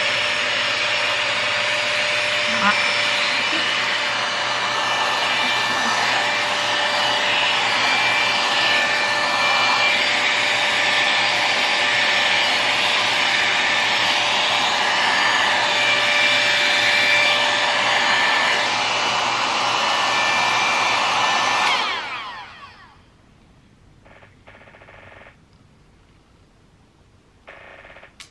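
Airwrap-style hot-air styler with a curling barrel attachment, its fan blowing steadily with a faint whine. About 22 seconds in it is switched off and the motor winds down, leaving quiet with a few faint handling knocks.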